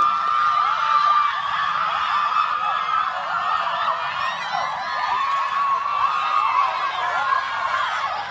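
A crowd of girls' lacrosse players screaming and cheering together in celebration of a win, many high-pitched voices overlapping in a continuous din with shrieks rising and falling.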